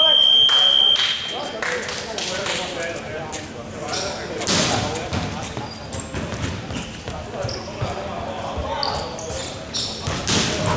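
Basketball scoreboard buzzer sounding on one steady high tone and cutting off about a second and a half in. Then players' voices and a basketball bouncing on the court.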